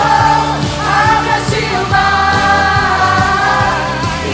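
Live worship band and group of singers performing an upbeat gospel song: sung lines with long held notes over a steady drum beat.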